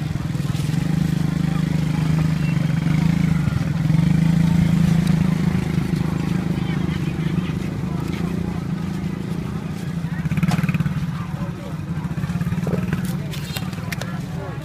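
An engine running steadily with a low hum that swells a little about four seconds in and again near ten seconds, alongside street voices.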